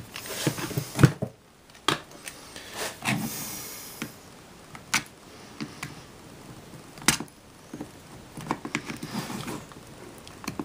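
Small screwdriver prying and scraping at the seam of a Flip Ultra camcorder's casing, with handling of the camcorder: irregular sharp clicks and scrapes, the loudest about a second in and again about seven seconds in.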